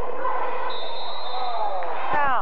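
Indoor basketball game: squeaks and scuffs from the court over crowd chatter, with a steady high whistle held for about a second midway.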